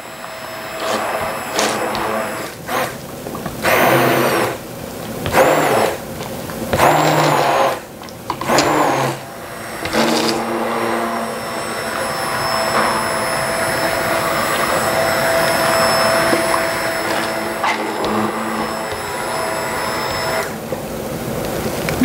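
KitchenAid immersion blender pureeing cooked butternut squash soup in a pot. Its motor whirs in short on-off bursts for about the first ten seconds, then runs steadily for about ten seconds and stops near the end.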